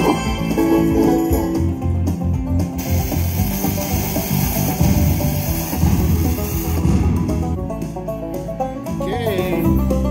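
Slot machine's western-style banjo game music playing as a bonus feature begins, with a hiss laid over it for a few seconds in the middle.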